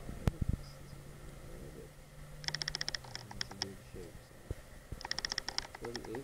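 Two short runs of rapid, evenly spaced clicking, each about half a second long and a couple of seconds apart, after a single sharp click at the start, with low, muffled talking underneath.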